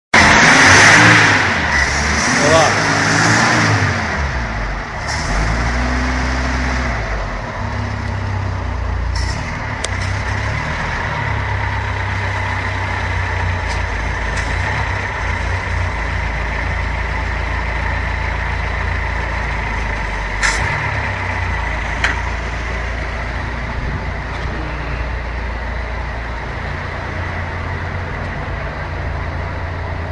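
Chevrolet 1.6-litre four-cylinder flex-fuel engine with a carburettor running with its bonnet open; over the first several seconds it is revved up and down, then it settles into a steady idle.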